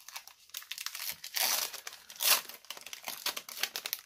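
Crinkling of a Panini Mosaic basketball card pack wrapper handled and pulled apart by hand, in irregular rustles with sharp crackles, loudest about a second and a half and two and a quarter seconds in.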